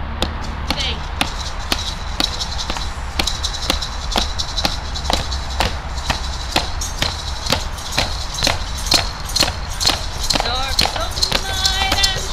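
Steady hand percussion, about three strokes a second, keeping a beat for a ritual dance. Singing voices join in about ten and a half seconds in.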